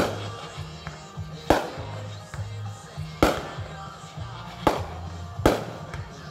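Aerial firework shells bursting: five sharp bangs spaced about one to two seconds apart. Music with a low bass line plays underneath.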